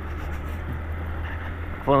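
Honda CG 125 Fan's single-cylinder four-stroke engine running steadily at low speed, heard as a steady low drone, with tyre noise from riding over cobblestones.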